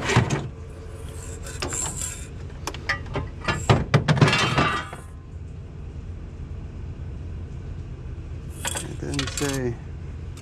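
Scrap being handled and set down in a pickup truck bed: a string of clinks and knocks of metal and glass, with a louder clatter about four seconds in, over a steady low hum.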